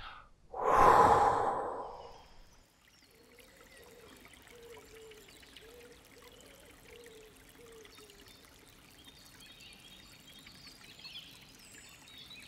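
A man's long, loud exhaled sigh through the open mouth, swelling and fading over about a second and a half.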